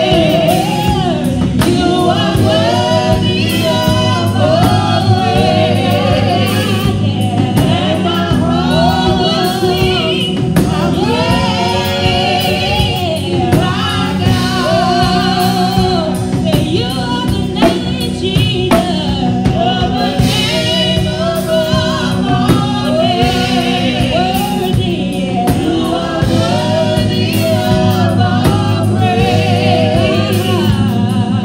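Gospel praise song sung into microphones by a worship trio of two women and a man, over steady instrumental accompaniment. The voices sing with a wavering vibrato throughout.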